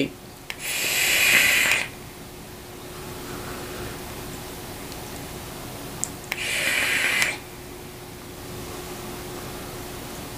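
A person vaping a rebuildable dripping atomizer with a 0.2-ohm coil build on a mod in bypass mode: two loud airy hisses of the hit being drawn and blown out, one about half a second in and one about six seconds in. A faint steady hiss and a low hum sit between them.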